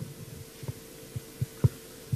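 A handheld microphone picking up a few soft, low handling thumps as it is held at the speaker's side, over a steady hum.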